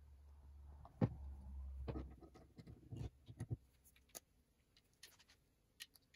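Light clicks and taps of metal parts being handled: a TR6 rocker pedestal slid along a steel rocker shaft and turned to line up its bolt hole, the sharpest click about a second in, over a faint low hum that dies away after about two and a half seconds.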